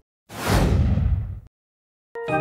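Editing whoosh sound effect: a single rush of noise about a second long that starts with a hiss, thins into a low rumble and cuts off suddenly.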